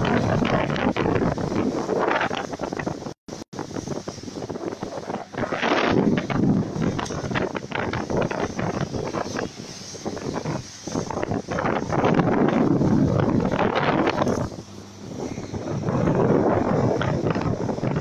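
Speedboat running fast over open sea: heavy wind buffeting the microphone over the rush of water from its wake, swelling and easing every second or two. The sound cuts out twice, very briefly, about three seconds in.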